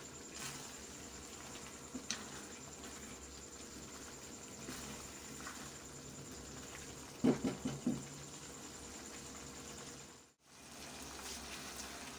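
Ridge gourd curry frying in a steel kadhai over a high gas flame, a low steady sizzle, while a plastic spatula stirs it with a few scrapes and knocks against the pan, a quick cluster of them about seven seconds in.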